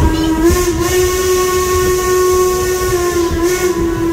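Steam locomotive whistle blowing one long, steady blast that starts just after the beginning, with a few short hisses of steam over it.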